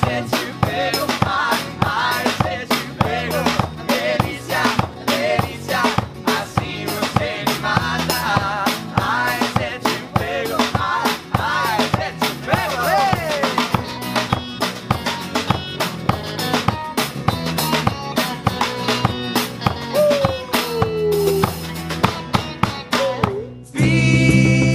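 Live band music with no lyrics sung: electric and acoustic guitars and electric bass over a small drum kit keeping a steady beat. Near the end the music cuts off abruptly and a different song begins.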